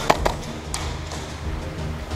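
Background music with a steady low bass, with a few sharp clicks in the first second.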